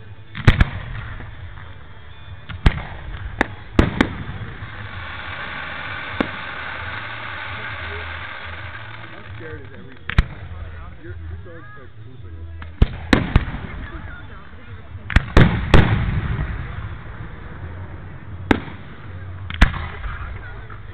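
Aerial fireworks shells bursting overhead: a string of about fifteen sharp bangs, several coming in quick pairs and clusters.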